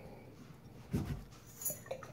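Quiet room with a brief, faint high click near the end as the glass wine bottle, its chilling rod inside, is lifted off the table.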